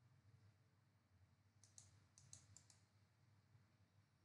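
Near silence with a few faint computer mouse clicks about two seconds in.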